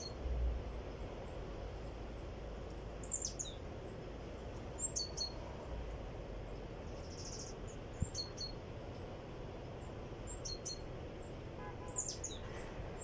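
Wild birds in woodland chirping: short, high calls scattered every second or two over a quiet background.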